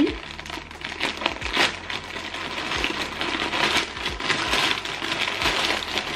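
Plastic mailer bag crinkling and rustling steadily as it is pulled open and rummaged through, with the small plastic sachets inside rustling against it.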